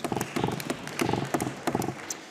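A man speaking at a lectern, his words broken by a run of short, sharp clicks that come several times a second.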